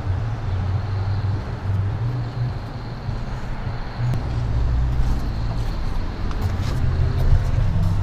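Street ambience with road traffic going by, a steady low rumble under a noisy hiss, which cuts off suddenly near the end.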